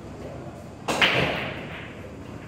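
Pool balls colliding: a sharp clack about a second in, followed by a fading rattle of balls.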